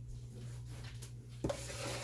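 Faint rubbing and scraping of the dry seasoned flour coating being handled in a bowl, with a light knock about one and a half seconds in, over a steady low hum.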